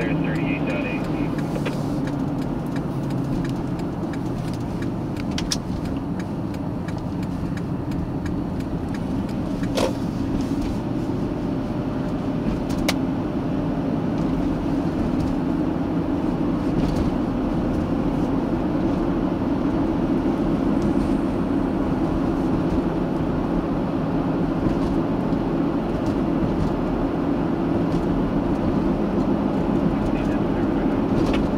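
Steady road and engine noise of a car driving at speed, heard from inside the cabin, with a few faint clicks.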